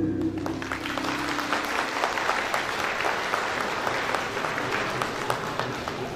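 Audience applauding at the end of a stage dance performance, with the last notes of the dance music fading out in the first couple of seconds.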